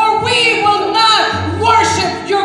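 A woman singing a worship song into a microphone, with electric guitar accompaniment, amplified through a PA.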